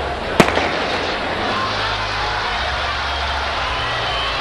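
A starting pistol fires once about half a second in. A stadium crowd's noise carries on steadily through and after the shot.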